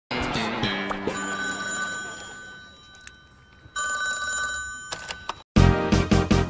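A brief burst of music, then a telephone ringing twice with a steady two-tone electronic ring, each ring about a second and a half long. A loud hip hop beat with heavy bass cuts in just before the end.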